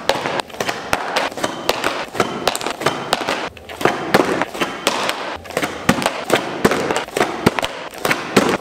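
A heavy Lou board 3.0 electric skateboard being popped and flipped on a concrete floor: a rapid run of sharp cracks and clatters as the tail, deck and wheels strike the ground, with rolling wheel noise between the hits.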